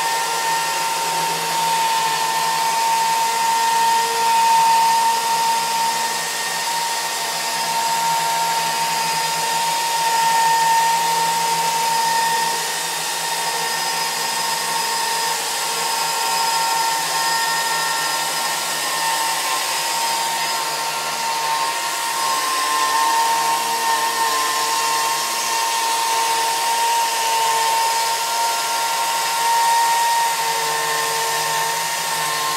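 Electric chainsaw on a Logosol chainsaw-mill carriage ripping lengthwise through a log. The motor gives a steady high whine under load, dipping slightly in pitch now and then.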